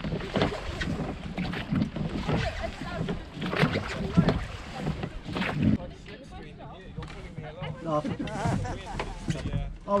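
Wind rumbling on the microphone of a small sailing dinghy in light air, with water sounds against the hull and short knocks and rustles. Indistinct voices come in near the end.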